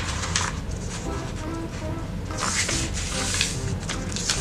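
A sheet of origami paper rustling and sliding on a table as it is folded into a triangle and smoothed flat, with a longer, louder rustle just past the middle.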